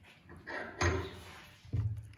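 Bench vise being tightened on a small piece of steel, with two knocks: one a little under a second in and one near the end.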